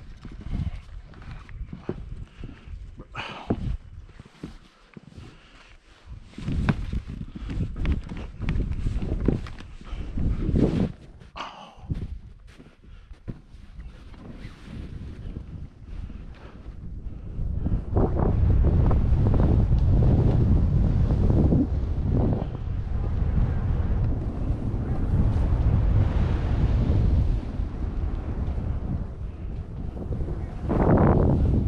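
Wind buffeting the camera microphone during a ski or snowboard run, in uneven gusts at first and then a loud, steady rumble from about 18 seconds in.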